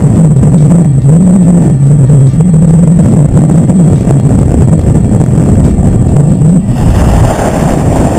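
Strong wind buffeting a GoPro's microphone: a loud, rough rumble with a low howl that wavers up and down. About two-thirds of the way through, the rumble changes and eases.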